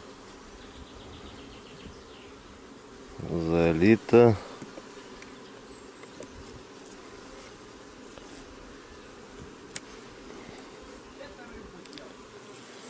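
Honey bees buzzing steadily around an open hive. A short burst of a man's voice sounds about three to four seconds in, and a faint click comes near the ten-second mark.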